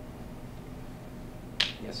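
Steady low room hum, then a single short, sharp click near the end.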